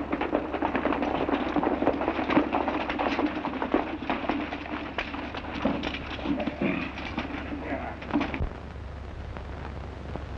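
A troop of cavalry horses galloping: a dense, irregular clatter of hoofbeats on a dirt street with voices over it, easing off near the end.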